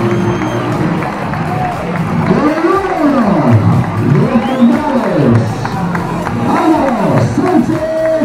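Music playing loud over a large crowd in the stands of a bullring, with voices shouting and cheering in rising and falling calls.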